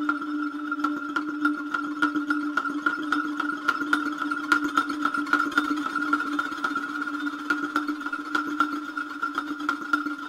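Noise music made from processed recordings of found instruments: two steady held tones, one low and one higher, under a dense, irregular scatter of sharp clicks and taps.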